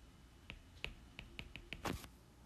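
Marker writing letters: a run of faint short ticks as the tip strikes and lifts, about six in quick succession, with a louder, longer stroke near the end.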